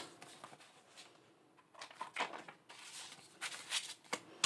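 Faint rustling and flicking of paper banknotes being handled and counted by hand, in a few short spells from about two seconds in.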